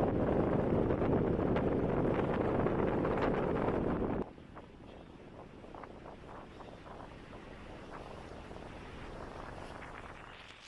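Strong wind buffeting the camera microphone as a loud, low, steady rush, which drops off suddenly about four seconds in to a much fainter wind hiss with a few light ticks.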